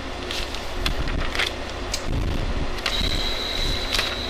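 A steady low background hum with a few faint rustles and clicks as a book's pages are handled. A thin, steady high tone comes in near the end.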